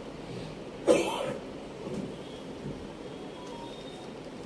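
A single short cough, loud and close to the microphone, about a second in, over faint room noise.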